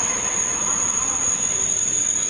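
Al Boraq high-speed double-deck train (Alstom Euroduplex) pulling in along the platform: a steady rush of the passing cars with a high, steady whine over it.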